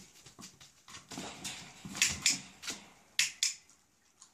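A series of sharp, irregular clicks and taps, several coming in quick pairs, in a small room.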